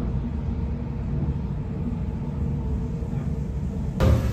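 Suburban electric train running along the track, heard from inside the carriage: a steady low rumble.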